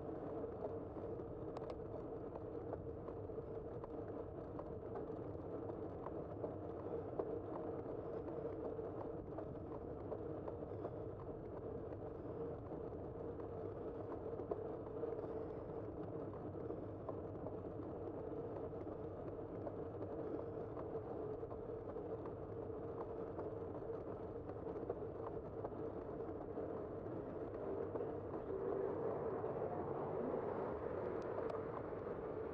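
Bicycle riding along an asphalt street, heard from a bike-mounted camera: a steady hum of tyres and drivetrain with scattered light clicks over the road surface, getting a little louder near the end.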